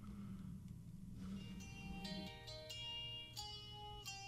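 A 12-string acoustic guitar, played faintly: a few picked notes come in from about a second in, each left ringing.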